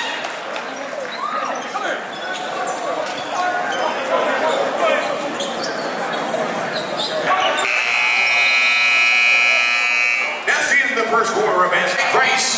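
Gym noise of voices and the crowd, then the gym's scoreboard buzzer sounds, a steady buzz held for about three seconds starting about two-thirds of the way in, with the voices returning after it.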